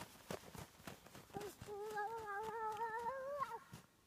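Footsteps crunching through deep, dry snow as a child runs. About a second and a half in, a high voice holds one long, slightly wavering note for about two seconds.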